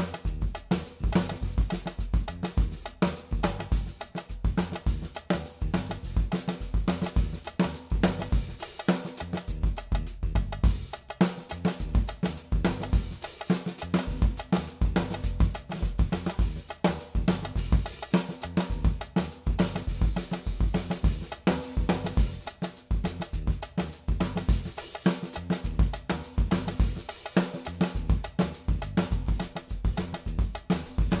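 Drum kit played in a steady, continuous groove: kick drum, snare, hi-hat and cymbals. The kit is tuned medium-low with the toms low and the kick lightly dampened, for a low, beefy sound.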